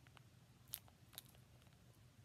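Near silence with two faint clicks and a few softer ticks: a small clear plastic case in a plastic bag being handled between the fingers.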